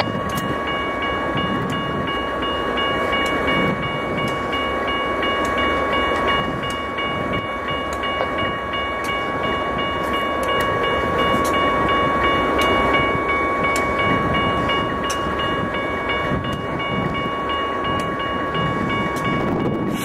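Idling GE diesel-electric locomotives standing close by: a steady low engine rumble with a constant whine over it.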